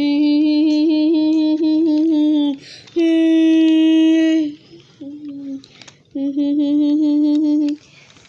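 Toy train's electronic horn sounding a series of steady blasts: long, long, short, long, the grade-crossing signal, with the second blast a little higher in pitch.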